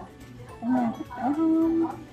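A woman's voice making two drawn-out voiced sounds without clear words, a short one and then a longer one held at a steady pitch near the end.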